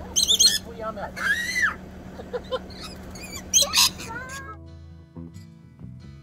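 Rainbow lorikeets screeching in shrill bursts as they crowd in to be hand-fed. About four and a half seconds in this gives way to acoustic guitar music.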